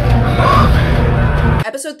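Dark, tense TV-drama score with a heavy low rumble, and a gasp about half a second in. The music cuts off abruptly after about a second and a half, and a woman starts speaking.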